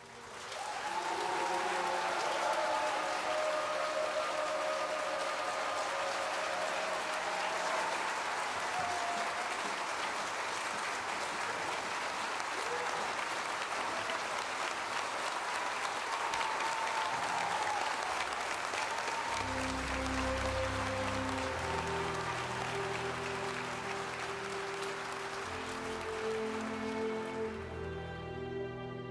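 Audience applauding steadily, with some cheering in the first several seconds. Orchestral music fades in under the applause about two-thirds of the way through.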